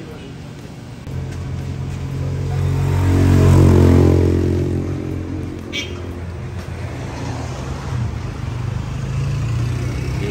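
A motor vehicle's engine passing close by on the road, growing louder to a peak about three to four seconds in and then fading, with a low engine hum carrying on afterwards. A single short click sounds just before the six-second mark.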